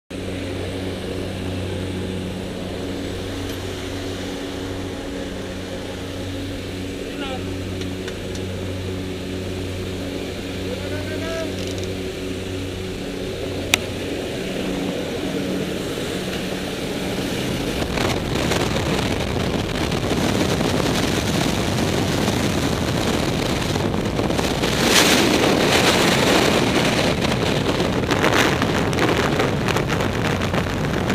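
Jump plane's propeller engines droning steadily, heard inside the cabin. At about 18 seconds, as the skydivers exit, this gives way to a loud, rushing freefall wind noise on the microphone that swells and stays loud.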